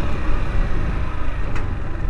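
Honda CG Fan 160 single-cylinder motorcycle being ridden, its engine running steadily under a constant rush of road and wind noise.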